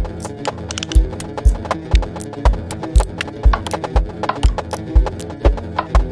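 Electronic music with a steady kick drum beating about twice a second. Short, sharp clicking percussion fills the gaps between the beats over sustained synthesizer tones.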